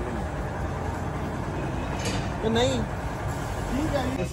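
Steady low engine rumble, with a voice heard briefly about two and a half seconds in.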